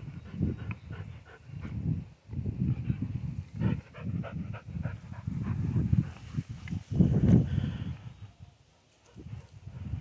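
A dog breathing and sniffing close by, with wind gusting on the microphone in irregular low bursts.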